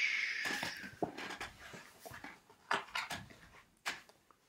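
A long shushing 'shh' trailing off in the first second, then the rustling and several light knocks of a hardcover picture book being handled and its page turned.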